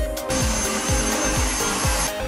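A cordless stick vacuum cleaner running for about two seconds: a steady rushing hiss with a thin high whine, starting and stopping abruptly, over background dance music with a steady beat.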